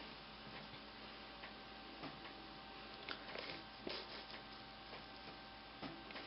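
A few faint, irregular light clicks and taps of bamboo double-pointed knitting needles being handled, over quiet room tone.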